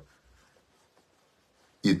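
Near silence: faint room tone, then a man's voice starts again near the end.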